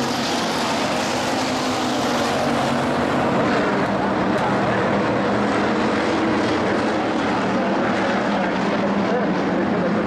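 A pack of IMCA Hobby Stock race cars running at racing speed on a dirt oval, their engines blending into one steady, loud drone.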